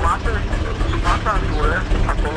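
Tractor diesel engine idling: a steady low rumble, with a faint voice talking over it.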